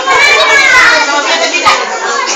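Children's voices talking and calling out over one another, loud and continuous.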